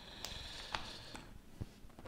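Faint clicks and handling as a charging-lead plug is pushed into a drone LiPo battery's connector, about four small ticks spread over two seconds.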